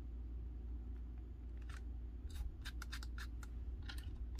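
Photo print and cardstock being handled and slid on a scrapbook page: a quiet start, then from about halfway a quick run of short crisp paper scratches and clicks, over a steady low hum.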